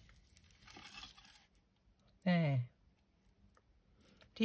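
Gilded card butterfly cut-outs sliding under fingertips over a cutting mat, a faint rustling scrape in the first second and a half. About two seconds in comes a short hummed "mm" that falls in pitch, the loudest sound.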